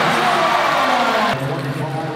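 Basketball arena crowd cheering a made basket, a dense roar that cuts off abruptly a little over a second in. It gives way to quieter arena noise with a steady low hum.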